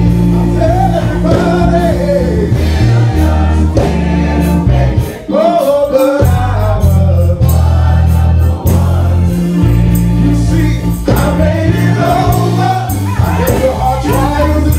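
Male gospel vocal group singing in harmony, backed by a live band with a bass line and drums.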